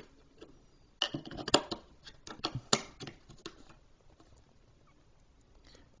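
Small sharp clicks and plastic crinkling as a boxed light-up picture frame and its clear plastic wrapping are handled, a quick irregular run of clicks from about a second in until past three seconds, then a few faint ticks near the end.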